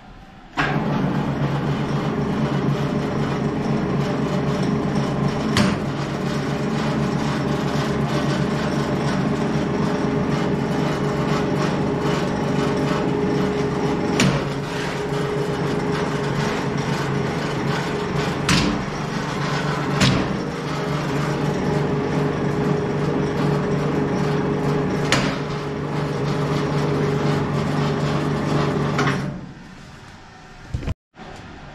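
A three-roll section bending machine running under power as it rolls a steel flat bar into a ring: a steady, even hum that starts just after its button is pressed and stops about a second before the end, with about five sharp clicks or knocks along the way.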